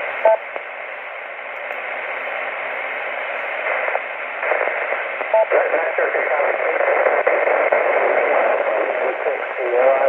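A 10-meter FM transceiver's speaker on receive: steady radio hiss through a repeater, with a short beep just after the start and another about five seconds in. From about halfway a distant station's voice comes up weak and buried in the noise, growing clearer near the end.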